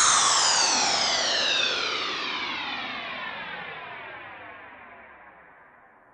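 Closing electronic sweep of a dance track: a cluster of synthesizer tones gliding steadily downward in pitch, with echo, while fading out.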